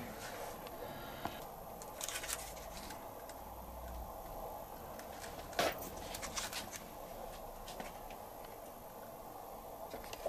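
Faint light clicks and taps of hand work at a scooter engine's cylinder head as solder wire is readied for a squish check, over quiet workshop room tone. The most distinct click comes about halfway through.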